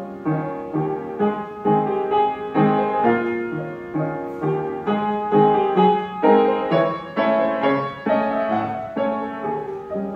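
Upright acoustic piano being played, a run of struck notes several a second, melody over a lower accompaniment.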